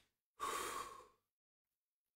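A man sighing once: a single breathy exhale of under a second, about half a second in.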